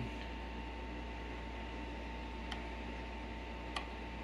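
Steady low electrical hum with a thin high tone over it, and two faint ticks about a second apart in the second half.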